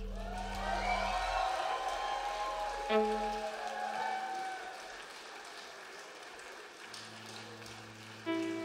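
Audience applauding quietly as the song's final chord dies away, with a few held instrument notes sounding over the clapping, one entering about three seconds in.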